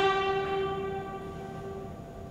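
Ceremonial band music: one long held brass-like note, loud at first and dying away over about two seconds.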